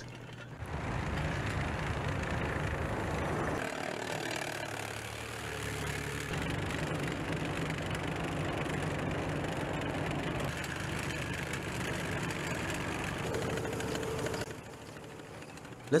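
Engines of a column of tracked armoured vehicles running as they move off on snow, a steady mechanical drone with a low engine note. It drops to a lower level near the end.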